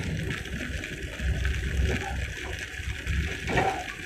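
Steady rumble and hiss of a moving passenger train, heard from inside the carriage.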